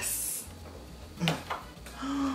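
Kitchen knife cutting through corn tortillas on a plastic cutting board: a short high hiss of the blade near the start, then a single knock about a second later.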